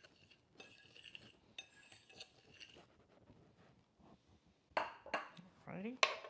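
Faint clinking and scraping of a metal fork against a ceramic bowl, stirring dry breadcrumbs, grated parmesan and Italian seasoning together. A few louder knocks near the end as the bowl is set down on the countertop.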